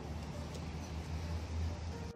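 Steady low rumble of downtown street traffic, swelling a little in the second half.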